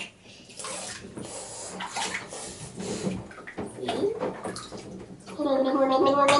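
Bathwater splashing and sloshing as toddlers play in a bathtub, with scattered small splashes and knocks from plastic cups. Near the end a young child's voice comes in loudly with a long held note.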